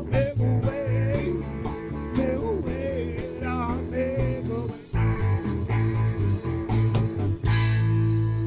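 Live blues-rock trio with electric guitar, bass and drum kit, and a voice singing a wavering line over the band. Near five seconds the band drops out briefly, comes back with heavy accented hits and holds one long chord near the end.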